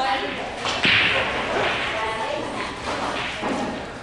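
One sharp crack about a second in, followed by a short fading hiss, over people talking in the background.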